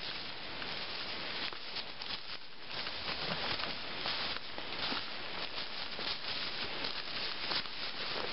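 Footsteps and the rustle of a handheld camera while walking, over steady outdoor background noise, with scattered short clicks and knocks.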